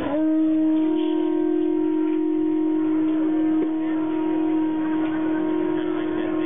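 Conch shell trumpet blown in Aztec ceremonial dance: one long, steady horn-like note that starts at once and is held, with a brief waver a little past the middle.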